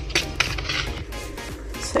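Background music, with a wire whisk clicking against a stainless steel bowl as cake batter is whisked.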